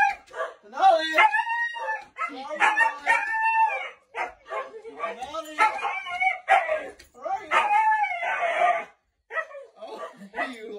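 A husky 'talking': a string of drawn-out, howling yowls, each about a second long, rising and falling in pitch, with short breaks between them.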